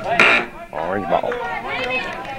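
Voices calling out at a soccer game, from spectators or players. About a quarter second in there is a short, loud, harsh burst of sound.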